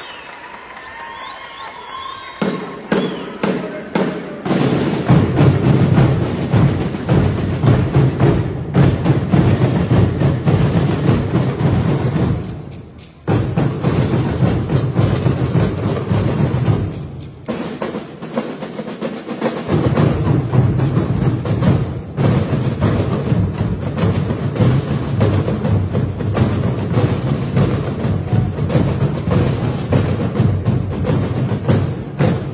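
Marching band drum line with massed bass drums playing a loud, driving percussion cadence. It comes in about two seconds in and twice cuts off sharply for a moment in the middle before starting again.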